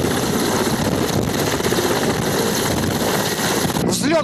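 Mi-8 military transport helicopter taking off: its turbine engines and rotors run loud and steady, with a fast rotor beat. The sound cuts off abruptly just before the end.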